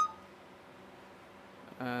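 A single short electronic beep from a Samsung Galaxy S3's camera app as video recording is stopped. It is one brief tone that fades at once, followed by faint room hiss.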